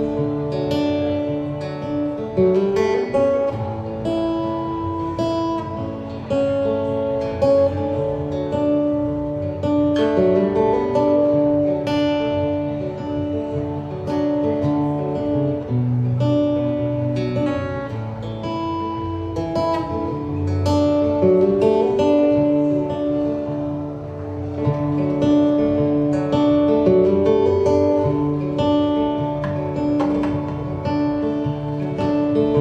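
Acoustic guitar strummed in a steady rhythm, a chord pattern that repeats every several seconds, with no singing.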